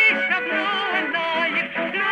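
Folk dance orchestra playing an Israeli folk song, with several wavering melody lines over a steady accompaniment and a brief lull in loudness near the end.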